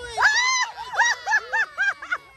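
A voice letting out a long high squeal and then a quick run of short high-pitched squeals, about four a second.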